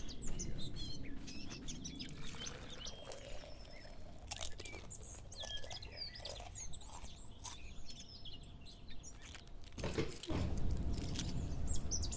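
Birds chirping in short, scattered calls over a low background rumble, with a louder burst of noise about ten seconds in.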